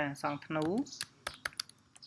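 A short spoken phrase at the start, then typing on a computer keyboard: several quick, separate keystroke clicks through the second half.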